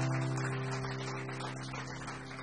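A chord on a Takamine acoustic guitar rings out and slowly fades.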